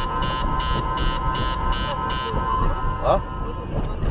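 Car interior while driving at low speed: steady road and engine rumble. Over it a steady electronic tone sounds with a rapid beep repeating about two and a half times a second; the beeping stops a little after two seconds in and the tone soon after.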